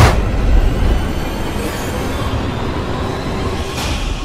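Soundtrack of a vehicle crash-test film: a loud hit at the very start, followed by a continuous low rumble, with a second, smaller hit near the end and music underneath.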